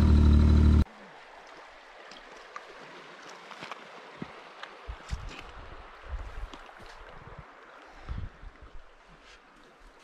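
A steady engine hum cuts off under a second in. After it comes faint shallow water trickling and lapping among shoreline rocks, with irregular low gusts of wind on the microphone.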